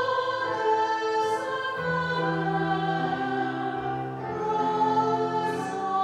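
Choir singing a slow hymn in sustained chords, the notes held and changing about once a second.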